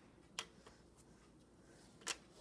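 Near silence in a small room, broken by one sharp click about half a second in and a couple of fainter ticks after it.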